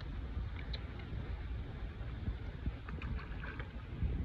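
Outdoor water ambience: a steady low rumble with small splashes and drips of water, most of them in the second half.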